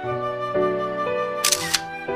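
Instrumental background music with a flute melody, interrupted about one and a half seconds in by a brief camera-shutter click.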